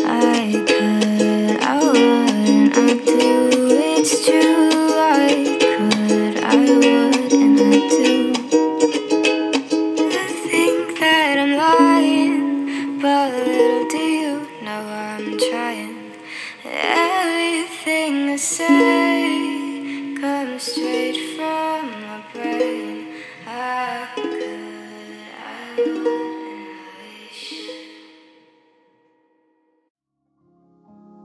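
Ukulele music: plucked chords and notes of a song's instrumental close, thinning out over the second half and fading to silence near the end.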